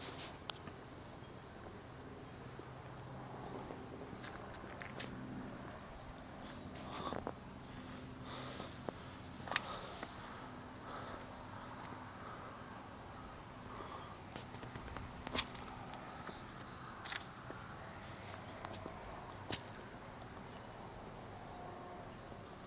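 Insects calling steadily and faintly: a continuous high buzz and a lower chirp that repeats at an even pace. Footsteps on a concrete sidewalk and scattered sharp clicks come through above them.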